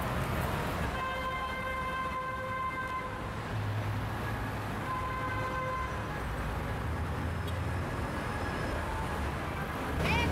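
Highway traffic running past with a low rumble, and a vehicle horn sounding twice: a held blast of about two seconds starting a second in, then a shorter one about five seconds in.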